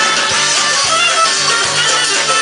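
An Algerian band playing upbeat music, with plucked guitars over a quick, steady beat.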